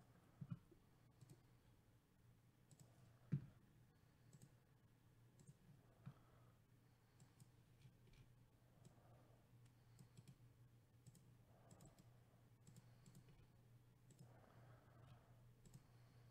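Near silence with faint, scattered computer mouse clicks over a low steady hum; the sharpest click comes about three seconds in.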